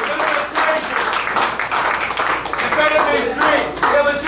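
Audience clapping in a crowded club, mixed with crowd voices, with the band's music no longer playing.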